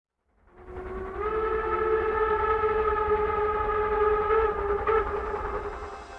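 Steam locomotive whistle blowing one long held note over a low rumble. It fades in during the first second and eases off near the end.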